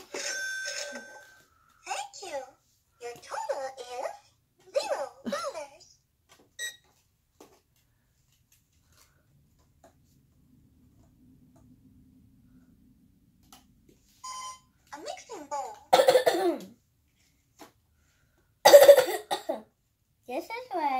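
Child's speech and coughing, with the loudest sounds being two sharp coughs in the last few seconds; a quieter stretch in the middle.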